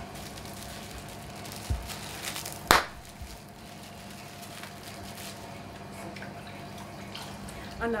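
Quiet wet handling of plaster of Paris as it is smoothed by hand, over a steady hum. One sharp knock comes a little under three seconds in.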